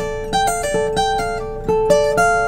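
Acoustic guitar played alone: a short lick of single picked notes, with one lower note left ringing underneath while the notes above it change.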